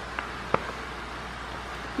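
A fork clicks faintly twice against a ceramic bowl while banana chunks are mashed, over a steady low room hum.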